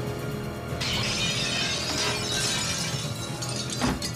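Action-film soundtrack music with glass shattering and scattering, starting about a second in and dying away, then a sharp hit near the end.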